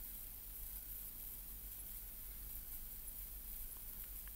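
Quiet room tone with a faint steady low hum; no distinct sound events.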